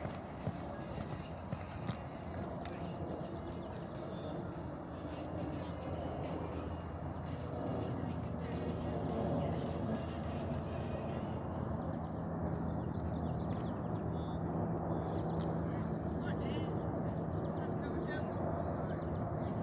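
Horse's hoofbeats as it canters on a sand arena, heard under indistinct voices and music.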